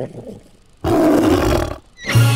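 A cartoon monster roar sound effect from a dragon prop hanging on a string, one loud roar about a second long in the middle.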